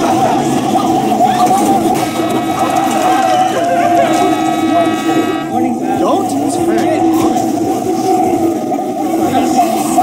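Several video soundtracks playing over one another: overlapping voices and music in a garbled jumble, with a buzzy held tone from about two to five seconds in.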